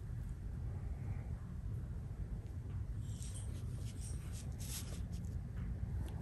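Faint brushing and scratching of a Chinese painting brush's bristles dragged across xuan paper, a few short soft strokes mostly in the second half, over a steady low room hum.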